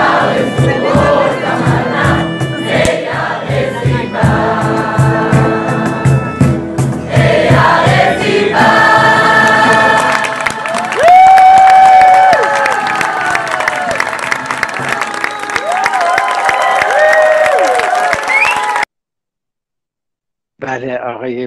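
A mixed choir of uniformed soldiers, men and women, singing a Persian love song in chorus over a steady beat. About nine seconds in, the audience grows louder with cheering and shrill rising-and-falling whistles over the singing. The sound cuts off abruptly about a second before the end.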